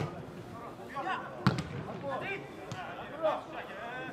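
A football kicked hard at the very start, then a second, louder thud of the ball about one and a half seconds in, with players' shouts on the pitch around them.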